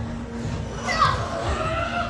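Background voices of children playing, with brief indistinct speech about a second in.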